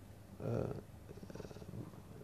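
A man's quiet hesitation sound, a short "uh", trailing off into a low, rough, drawn-out hum of the voice.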